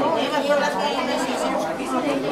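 Crowd chatter: many people talking at once, their voices overlapping steadily.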